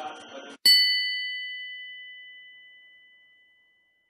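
A single bright bell-like chime, struck once, whose clear tones ring out and fade away over about three seconds. Just before it, a faint bed of background music cuts off.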